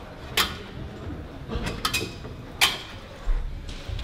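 Scattered short knocks and scuffs of climbing shoes and hands on the holds and panels of an overhanging bouldering wall as the climber moves through a hard sequence, with a low thump near the end as her feet come off the wall.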